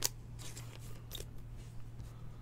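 A trading card being slid into a clear plastic sleeve: a sharp click at the start, then a few soft plastic scrapes and rustles.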